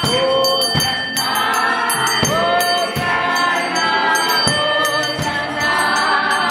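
Choir singing gospel music with a steady beat, about four beats every three seconds.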